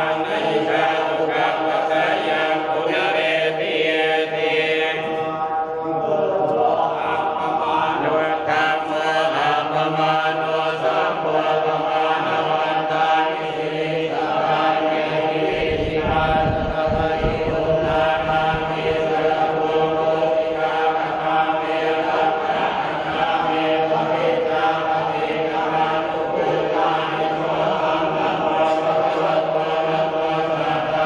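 Thai Buddhist monks chanting together in unison, a continuous drone of many men's voices, with a brief low rumble about halfway through.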